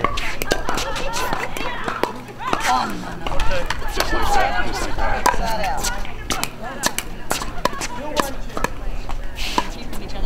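Pickleball rally: repeated sharp pops of paddles striking a plastic pickleball, some in quick succession, with voices in the background.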